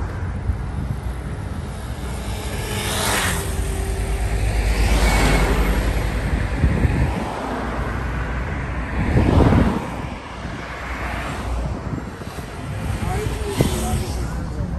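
Road traffic on a multi-lane city road: a steady low rumble with several cars swishing past close by, the loudest about nine and a half seconds in.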